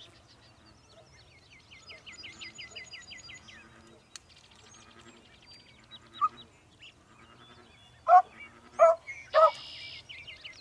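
Beagle hound barking on a rabbit's scent trail: one short yip about six seconds in, then three sharp barks about half a second apart near the end.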